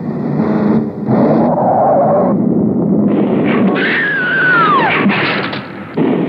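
Old film soundtrack of cars racing: engines running hard, then a long falling tyre screech about four seconds in as the car skids, followed by crashing as it goes through a bridge railing.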